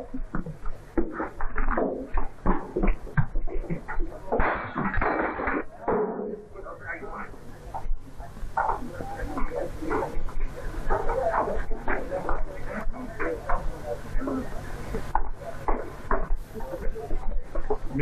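People talking in film dialogue that the recogniser did not transcribe, over a steady low hum in the old soundtrack.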